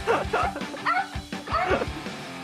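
Toy poodle barking in a quick series of high, yappy barks over background music with a steady beat.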